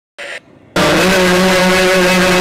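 A man's voice singing one long, steady held note into a microphone. It starts abruptly under a second in, after a brief burst of noise.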